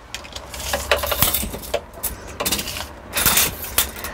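Retractable tape measure being pulled out and run along a shower floor, the tape rattling and clicking in several short bursts, loudest about a second in and again near the end.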